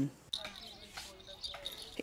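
Faint outdoor ambience with a steady high insect trill, like crickets.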